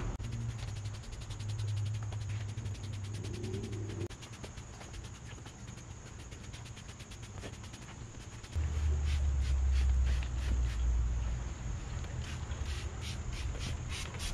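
Insects chirping in a fast, even pulse, over a low rumble that grows louder about eight and a half seconds in.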